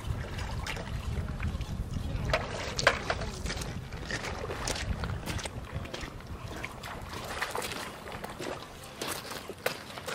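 Wind rumbling on the microphone over the sound of river water, with a few short ticks scattered through.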